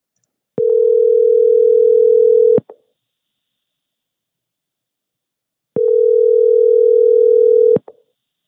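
Telephone ringback tone of an outgoing call: two steady two-second rings with about four seconds of silence between them, each followed by a faint click. The line is ringing at the other end, not yet answered.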